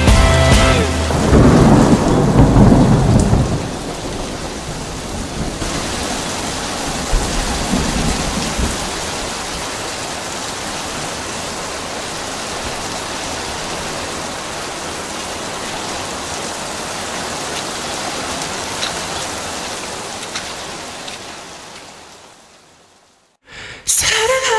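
Heavy rain falling steadily, with a loud low rumble of thunder in the first few seconds. The rain fades away near the end.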